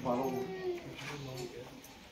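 Indistinct voices of people talking among a gathered crowd, dying down near the end.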